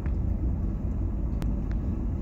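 Steady low rumble of wind and road noise in an open convertible moving along a street. A single light click comes about one and a half seconds in.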